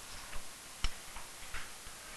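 A few faint, irregularly spaced clicks and taps of a pen stylus on an interactive whiteboard, the sharpest about a second in.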